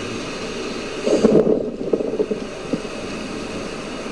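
Steady rushing of ocean surf and wind on a sandy beach, swelling for a moment about a second in.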